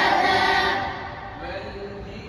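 A group of boys chanting Quran recitation in unison, loud for about the first second and then fading out as the verse ends.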